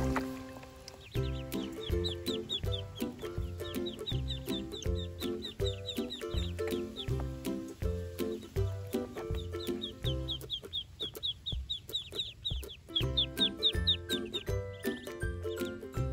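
Ducklings peeping in quick runs of short, high, falling chirps, several a second, with a pause in the middle. Underneath is background music with a steady beat.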